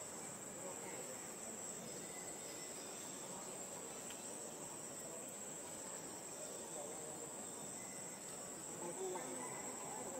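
Steady high-pitched drone of a forest insect chorus, unbroken throughout, with a few brief louder sounds near the end.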